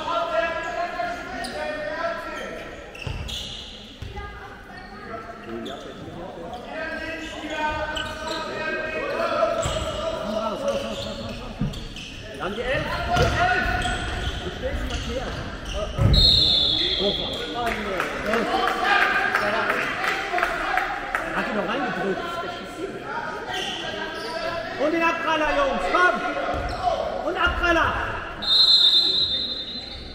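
A handball game in a reverberant sports hall: a ball bounces on the wooden floor and players and coaches shout indistinctly. A referee's whistle blows twice, about halfway through and again near the end.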